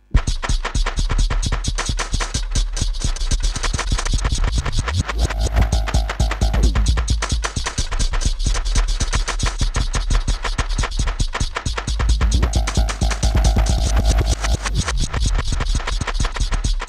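Granular synthesis texture from Logic Pro's Alchemy playing a beat loop as grains, pitched down a few semitones: a dense stream of rapid clicks over deep bass. A slow sine LFO sweeps the grain size, so a ringing mid tone with gliding pitches swells in twice, about six seconds and thirteen seconds in.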